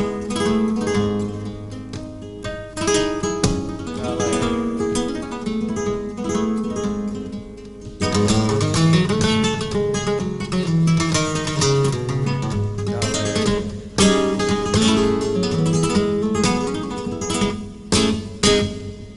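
Flamenco acoustic guitar playing a solo passage (falseta) in soleá between sung verses: plucked melodic runs, with sharp chord attacks about eight and fourteen seconds in.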